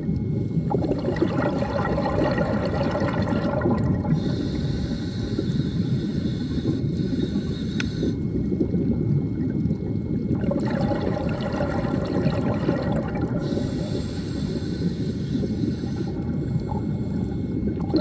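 Underwater sound of a scuba dive: a steady low rush of water and bubbling, with stretches of hiss that come and go every few seconds, like a diver's regulator breathing.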